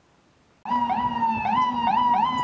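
Ambulance siren in fast yelp mode: a quickly repeating rising sweep over a steady tone. It starts suddenly about half a second in, after a brief silence.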